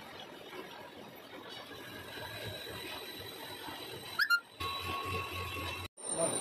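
Metal lathe running in a workshop, a steady mechanical noise with a faint high whine, broken a little after four seconds in by a short, loud high squeal that rises in pitch; right after it the background changes suddenly to a steadier hum with tones.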